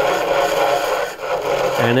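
Turning tool scraping across a slowly spinning basswood bowl on a wood lathe: a steady rasping cut, dipping briefly about a second in.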